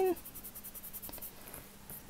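Kneadable eraser being rubbed back and forth over pencil marks on paper: quick, even scratchy strokes, about six a second, that die away a little over a second in.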